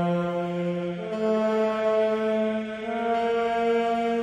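Large male choir singing held chords, the harmony shifting to a new chord about a second in and again near three seconds.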